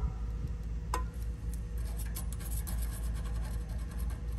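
Multimeter test probes rubbing and scraping against a compressor's terminals, with one small click about a second in and scattered light ticks later, over a low steady hum.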